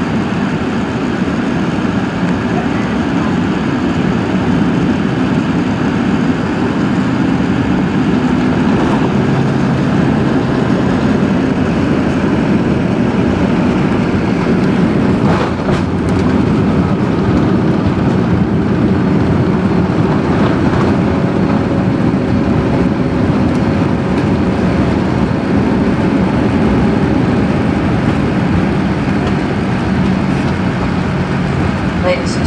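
Boeing 787 cabin noise during the landing rollout: a steady, loud rumble of the engines, air and wheels on the runway. A couple of short knocks come from the landing gear going over the pavement just past the middle.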